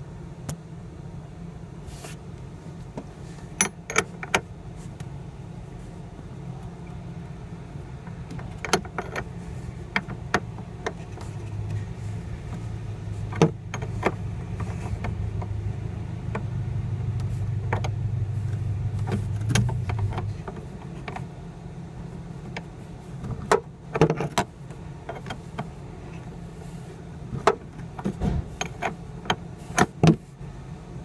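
A BMW's engine idling, heard from the trunk beside the battery, with scattered clicks and knocks close by. A louder hum comes in about eleven seconds in and stops suddenly about twenty seconds in.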